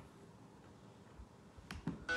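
Quiet room tone with two faint, sharp clicks near the end.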